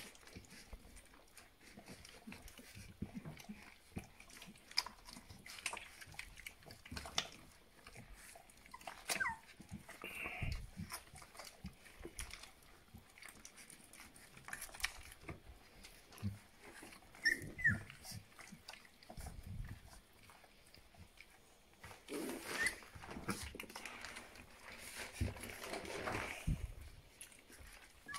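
Three-week-old Rhodesian Ridgeback puppies nursing from their mother: faint scattered clicks and shuffling, with a few short high squeaks from the puppies.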